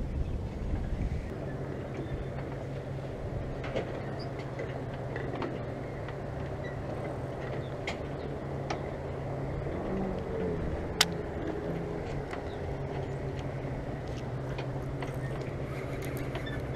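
A distant engine running steadily as a low hum, its pitch briefly gliding about ten seconds in; a single sharp click sounds shortly after.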